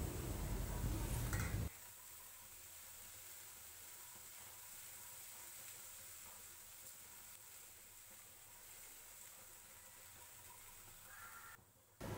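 Near silence: a faint hiss for the first couple of seconds, then the sound cuts out suddenly and stays silent.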